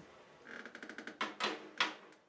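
Drumsticks rattling and knocking on a drum head as they are handled: a quick run of light, rapid taps, then three sharper knocks about a quarter second apart near the end.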